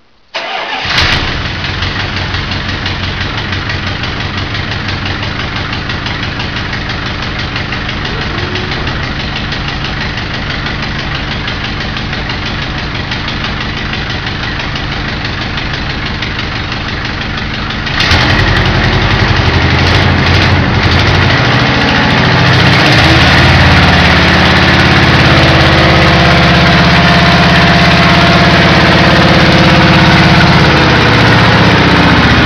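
V8 engine of a 1934 Ford hot rod starting and running with a rapid, even beat. About eighteen seconds in, the throttle is opened and it suddenly runs louder and faster, settling a few seconds later into a loud fast idle.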